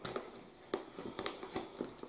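Faint, scattered crinkles and clicks of a clear plastic vacuum-sealed bag being handled.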